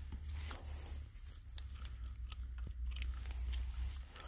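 Clear plastic card sleeves and packaging being handled, giving scattered crinkles and light clicks over a low steady rumble in a car cabin.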